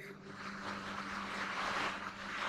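A marker scratching across a whiteboard as words are written, a fluctuating hiss that swells toward the end. A steady low hum runs underneath it.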